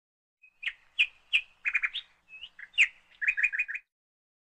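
A small bird chirping: a string of short, sharp chirps that ends in a quick run of four or five.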